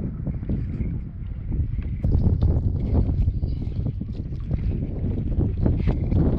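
Wind buffeting the microphone of a camera on a stand-up paddleboard, a fluttering low rumble, over the light slap and splash of lake water around the board as it is paddled. The rumble grows louder about two seconds in.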